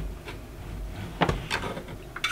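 A few short knocks of a knife against a plastic cutting board as a child scoops up cubes of butter.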